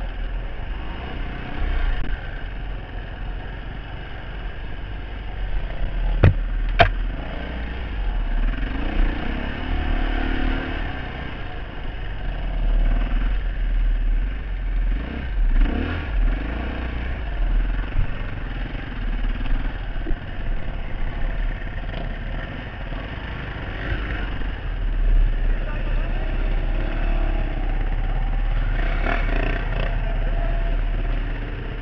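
Off-road motorcycle engine running as it is ridden along a dirt trail, picked up by a helmet-mounted camera, under a steady heavy low rumble. Two sharp knocks come about six seconds in.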